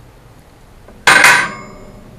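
A knife set down on a glass tabletop: one sharp clatter about a second in, with a short metallic ring fading after it.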